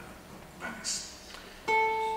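An acoustic guitar note is plucked sharply near the end and rings on, slowly fading, opening the song's accompaniment.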